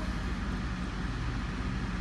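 Steady background hum and noise, even throughout, with its weight in the low range.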